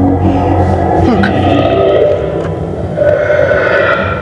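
Recorded dragon growl sound effect: a long, drawn-out growl with echo that shifts in pitch about three seconds in, the sleeping dragons made to sound as if they are waking.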